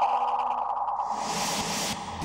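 Dramatic TV-serial background score: a warbling, wavering electronic tone, joined about halfway by a swelling whoosh that ends at the scene change.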